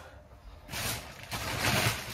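Rustling and knocking of grocery packaging being handled while groceries are unpacked, starting just under a second in after a short quiet moment.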